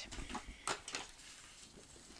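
Sheets of scrapbook paper handled on a tabletop: a brief rustle and a couple of soft taps in the first second.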